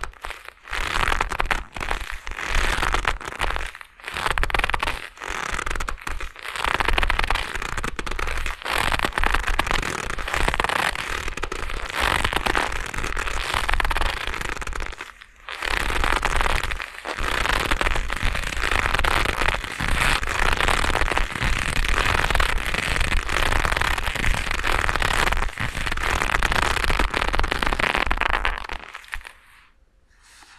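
Black leather gloves rubbed and squeezed close to a binaural microphone, giving a dense, crackling leather creak with a few brief pauses. It stops shortly before the end.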